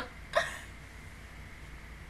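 The last bursts of a woman's stifled laughter behind her hand: one short burst right at the start and a final breathy, hiccup-like catch about half a second in, then only a faint steady hum.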